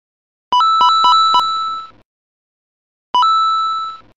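Retro video-game-style electronic beeps. About half a second in come four quick low blips under a held higher note, which fades out after about a second and a half; near the end a single blip and a held higher note sound again.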